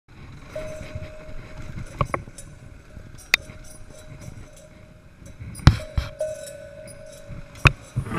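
Dirt bike ridden slowly over a rough, muddy trail: low engine and rolling noise, with about six sharp knocks and rattles from the bike and camera mount over bumps, the loudest a little before six seconds in. A faint steady whine comes and goes.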